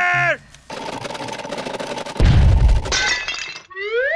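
A long crashing, shattering sound effect with a heavy thud about two seconds in, right after a short laugh. Near the end a whistle-like tone starts sliding upward.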